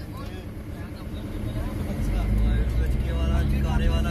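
Car engine heard from inside the cabin as the car pulls away: a low rumble that grows clearly louder about halfway through as it accelerates.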